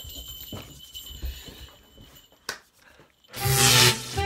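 Faint rustling and shuffling of people moving about a room, then a single sharp click about two and a half seconds in. Near the end a loud rushing swoosh bursts in, with music starting under it: the opening of a TV title sequence.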